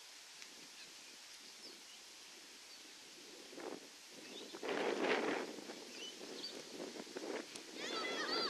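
Distant voices of players and spectators on an open football field: a few quiet seconds, then a short burst of shouting about four and a half seconds in as the ball is thrown up for a ruck contest.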